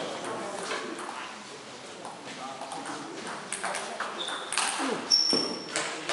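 Table tennis hall between points: scattered light taps and clicks, such as the ball bouncing and footsteps, and two brief high squeaks about four and five seconds in, over low voices in the hall.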